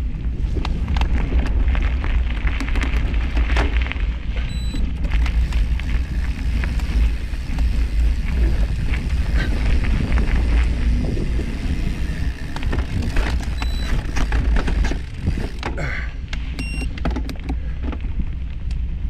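Bicycle riding along a dirt forest trail: a steady rumble of wind on the microphone, with the tyres crunching over leaves and twigs and frequent small clicks and rattles. A few short high tones sound now and then.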